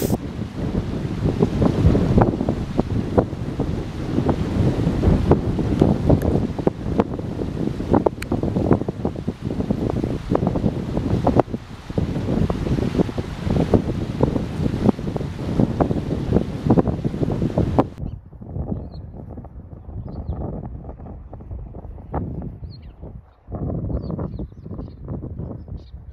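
Wind buffeting the microphone: a loud, rumbling noise full of irregular thumps. About three-quarters of the way through it becomes duller and quieter.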